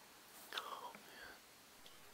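A faint whisper: a short breathy voice with a falling pitch, starting about half a second in and lasting under a second.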